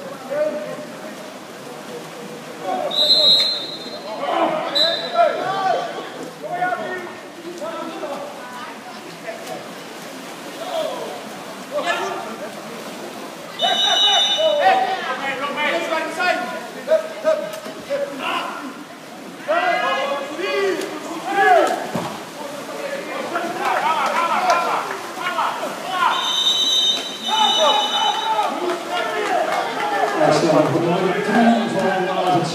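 A referee's whistle in a water polo match, blown in short, shrill blasts: about three seconds in, again around fourteen seconds, and near the end. Voices shouting run underneath.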